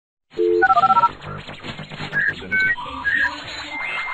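Electronic logo jingle made of short synthesized beeps: a quick run of pure stepping tones begins about a third of a second in, followed by a busier mix of beeps over a noisy, crackling texture.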